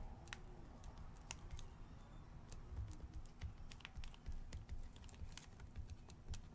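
Faint, irregular scratches and clicks of a pointed stick carving words into a red wax candle, several strokes a second.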